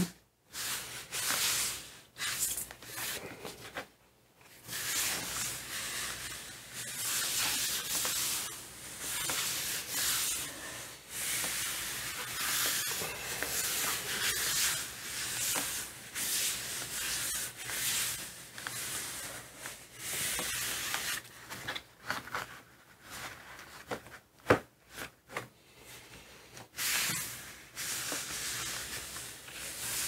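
Hands rubbing and pressing paper down onto a Gelli plate, a dry hissing swish in repeated strokes with short pauses, to burnish the paper and lift the print from the plate. A few short sharp knocks come about three-quarters of the way through.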